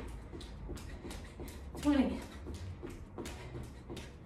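Sneakers landing on a rug-covered floor in quick alternating high-knee steps, about three footfalls a second, with a woman's voice counting "twenty" about two seconds in.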